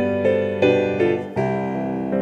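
Electronic keyboard playing the instrumental intro of a Macedonian folk song, with a piano-like sound. Sustained chords change a few times, with fresh notes struck at about half a second and just past one second in.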